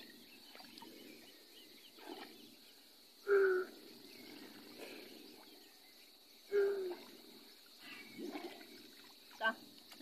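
Faint steady outdoor background, with a person's voice calling out briefly twice, about three seconds apart, each call dropping slightly in pitch, and a few fainter snatches of voice in between.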